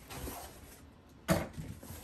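Foam packing and a cardboard box being handled during unboxing: faint handling noise, then one sharp knock about a second in.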